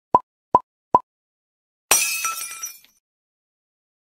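Channel-logo intro sound effects: three short pops about 0.4 s apart, then a hissing burst about two seconds in, carrying a few ringing tones and fading within a second.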